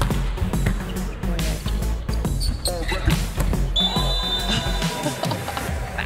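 Music with a steady beat over volleyball being struck hard during a rally, and a referee's whistle blowing about four seconds in as the point ends.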